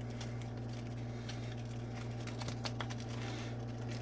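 Light clicks and taps of plastic K-cup pods being handled on a sheet of paper, over a steady low hum.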